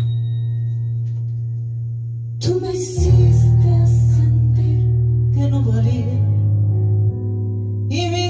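Live pop concert music. A held keyboard chord over a deep bass note fades out, then about two and a half seconds in the full band comes in loud, with a heavy bass line and bright cymbal-like hits.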